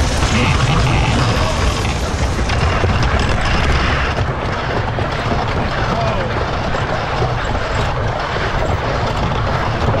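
The 1902 wooden side-friction roller coaster Leap the Dips running down its first drop and through curves, its train making a steady rumbling noise on the wooden track.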